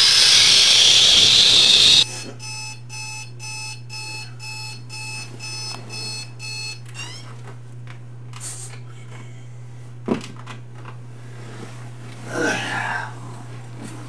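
Electronic alarm clock beeping in a fast, even pattern, about two to three beeps a second, starting after a loud rushing hiss and stopping about seven seconds in. A sharp click follows a few seconds later, then a short groan.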